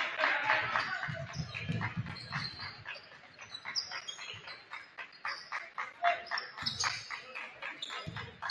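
Basketball game play on a gym hardwood floor: repeated sharp knocks of the ball dribbling and footfalls, with short high sneaker squeaks from about halfway on, over players' voices.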